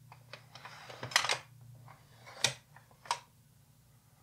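A 35mm slide being changed: several short sharp clicks, the loudest a little after a second in and two more later, over a faint steady low hum.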